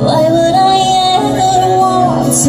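Live band music: a female voice leaps up and holds one long high note over acoustic guitar, keyboard and drum accompaniment.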